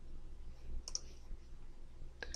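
Computer mouse clicking twice in quick succession about a second in, over a faint low hum.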